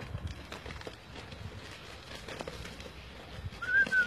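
Faint scattered rustles and soft knocks of movement in snow, then near the end a short, wavering, whistle-like high tone.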